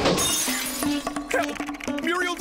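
Window glass shattering in one sudden crash at the very start, as a cartoon character smashes through it, the breaking glass dying away within about half a second. Background music plays on underneath.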